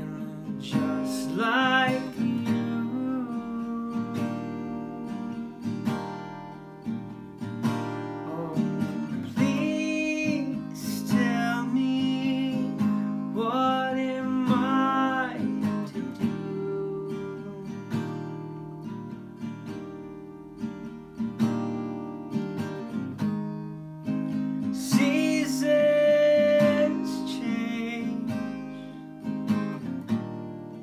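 A man singing to his own strummed acoustic guitar; the voice comes in several phrases, with stretches of guitar alone between them.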